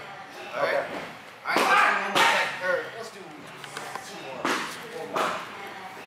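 Indistinct voices of people talking in a large room, broken by a few louder, sharper bursts that spread across the whole sound.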